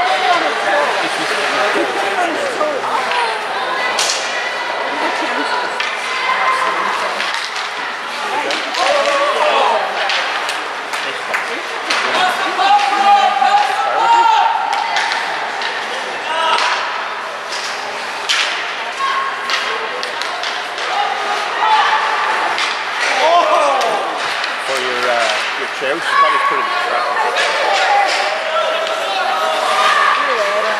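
Spectators' voices talking and calling out at an ice hockey game, mixed with sharp knocks and slaps of sticks and pucks against the ice and boards.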